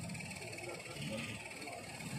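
Faint background murmur of voices with low outdoor traffic noise, during a lull after amplified chanting.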